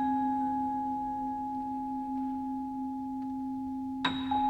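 Quiet chamber music: a single high vibraphone note rings on with a slow decay over a steady, held low tone, and another note is struck right at the end.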